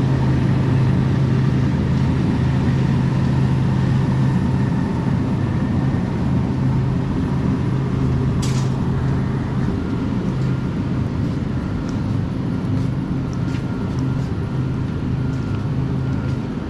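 Steady low hum of a supermarket's refrigerated display cases and ventilation, with a short hiss about eight and a half seconds in.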